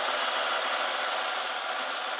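A 2012 SsangYong Chairman W 700's six-cylinder engine idling steadily.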